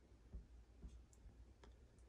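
Near silence: faint room tone with a few soft clicks and low bumps.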